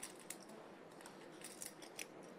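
Very quiet card-room tone with a few light clicks, as poker chips and cards are handled on the felt.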